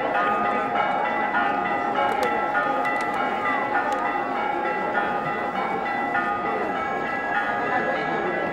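Church bells ringing continuously, many overlapping tones changing every fraction of a second, over the murmur of a large crowd. A few sharp clicks about two to four seconds in.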